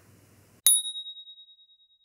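A single bright bell-ding sound effect, struck about half a second in, ringing in one clear high tone that fades out over about a second and a half.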